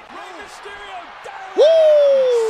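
Faint wrestling-broadcast sound, then about one and a half seconds in a loud held whoop that slides slowly down in pitch.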